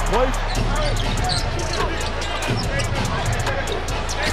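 A basketball bouncing on a hardwood court, repeated sharp bounces, with arena noise under a steady low music bass.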